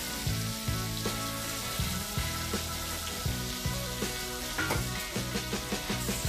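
Giant freshwater prawns frying in hot oil in a kadai, a steady sizzle, with background music underneath.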